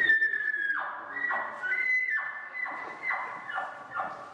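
A contestant blowing a game call that imitates a wild animal: a long, high, whistle-like note that sags slightly in pitch, then a run of shorter, raspy calls about every half second.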